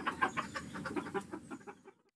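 Chickens clucking in a pen: a run of short, irregular clucks that fade away near the end.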